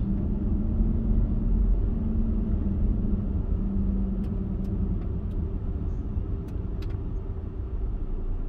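Car driving slowly, heard from inside the cabin: a steady low rumble of engine and tyres with a faint hum, and a few faint ticks in the second half.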